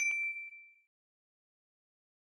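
A single bright ding, a bell-like notification chime sound effect, that rings on one high tone and fades out within about a second, as the animated cursor clicks the notification bell icon.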